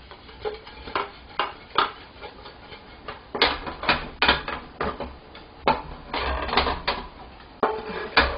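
Wooden spatula knocking and scraping in a nonstick frying pan as fried corn balls are tossed in sticky caramelized sugar syrup: irregular clacks, thickest around the middle and again a little after six seconds in.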